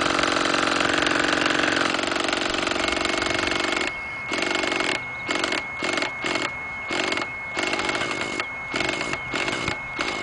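Handheld electric starter cranking the nitro engine of an Align T-Rex 600 Nitro Pro RC helicopter through the top of the main shaft. It runs steadily for about two seconds, then from about four seconds on it comes in a string of short bursts with brief breaks between them. A steady high whine runs from about three seconds in.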